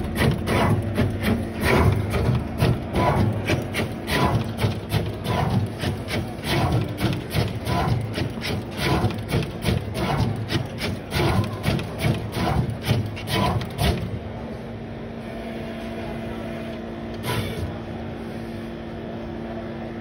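Neoden S1 pick-and-place machine running, its placement head moving rapidly in a quick, even rhythm of strokes, about two to three a second. The strokes stop about 14 seconds in, leaving a steady hum.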